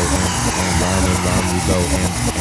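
Techno music from a DJ mix: a buzzing synth bass line with short, repeated pitch-bending notes, the kick drum dropped out for a moment.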